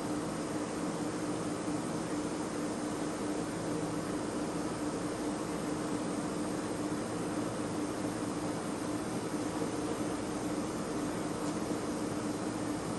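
Steady low hum with even hiss and no other events: theatre room tone.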